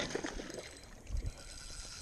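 Hooked bass thrashing and splashing at the water's surface beside the boat, with a sudden burst of splashing at the start and a couple of low knocks about a second in.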